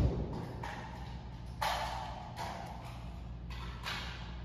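Indoor room ambience: a steady low hum with a few short bursts of hiss-like noise, such as handling or movement sounds.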